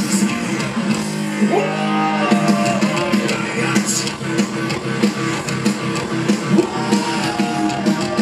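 Metal band playing live on stage: distorted electric guitar, bass guitar and drums, loud and dense. A note slides up about a second and a half in and is held.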